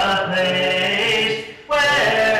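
Congregation singing a hymn a cappella, with no instruments, led by a man's voice; the singing breaks off briefly for breath a little past halfway, then the next phrase begins.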